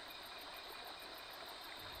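Faint insects chirping in a quick, even rhythm over a soft, steady rushing hiss: a nature ambience bed of crickets and running water.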